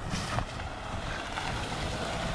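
Wind buffeting the camera microphone outdoors: a steady low rumble with irregular gusty surges.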